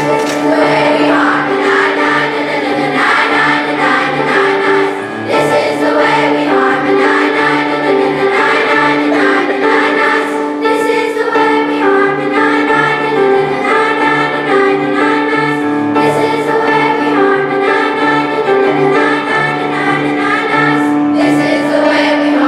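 Children's choir singing a song together with keyboard accompaniment, starting right at the beginning and continuing steadily.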